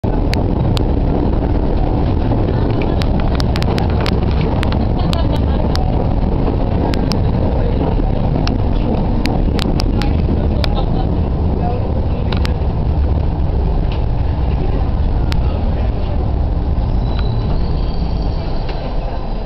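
London Underground train running through a tunnel, heard from inside the carriage: a loud, steady rumble with scattered sharp clicks, easing slightly near the end.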